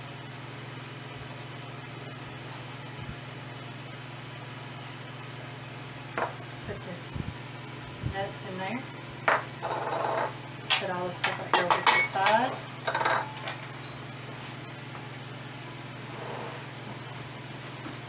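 A steady low hum. From about six seconds in comes a run of knocks and clinks against a stainless steel mixing bowl, as hands rub butter, flour and brown sugar together into a crumble topping.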